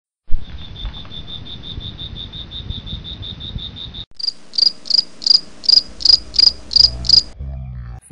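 Crickets chirping: a fast, even, high trill of about seven pulses a second that cuts off abruptly about four seconds in and gives way to a slower, higher chirp about three times a second. A sharp knock opens the sound, and a low hum comes in near the end.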